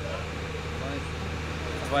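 Steady low hum of an idling vehicle engine, with faint voices over it and a word spoken at the very end.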